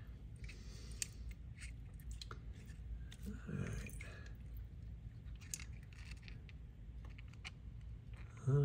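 Faint handling sounds: scattered small clicks and knocks as a sawn agate nodule is picked up by hand and its two wet cut halves are separated in the fingers.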